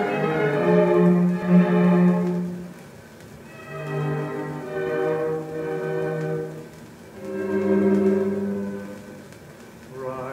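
Orchestral music playing from a 1947 shellac 78 rpm record: three sustained phrases of held chords, each swelling and then fading away.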